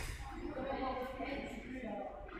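Indistinct voices of several people talking in the background, no single speaker standing out.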